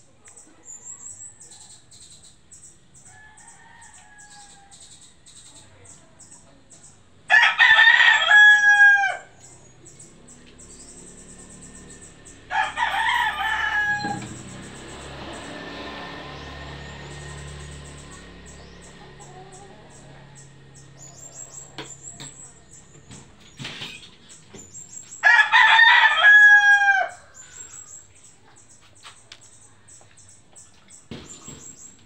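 A rooster crows three times, once about a quarter of the way in, again a few seconds later, and once more near the end. Each crow has a falling end, and the second is shorter than the other two.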